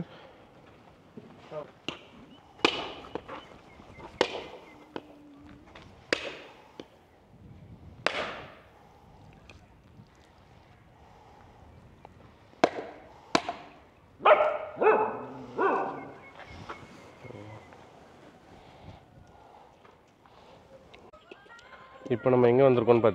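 Husked coconuts knocking, a series of single sharp knocks every second or two, each with a short ringing tail.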